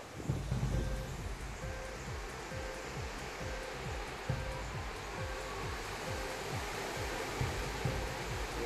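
Strong wind gusting through trees and buffeting a phone's microphone, a steady rushing noise with rumbling low gusts.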